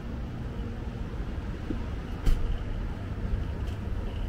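Street traffic ambience: a steady low rumble of road traffic, with one sharp click a little past halfway.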